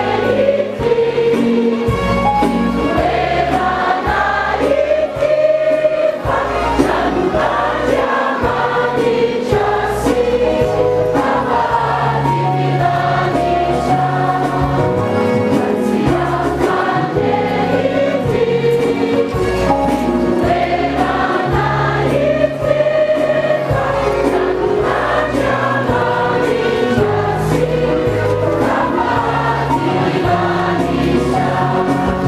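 Choir singing with instrumental accompaniment, a bass line moving in steady held notes beneath the voices.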